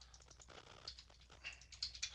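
Faint computer keyboard typing: a run of irregular light keystrokes as numbers are entered.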